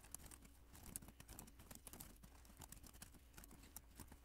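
Faint typing on a computer keyboard: a quick, irregular run of key clicks as code is entered.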